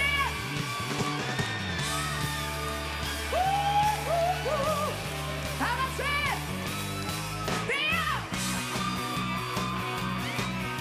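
Live rock band with electric guitars and bass playing a song's opening, while the lead singer lets out several wordless sliding yells and whoops over it into the microphone, the highest one near the end.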